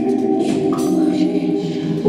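Live music: a woman singing into a microphone over a steady, layered, choir-like chord of voices and electronics.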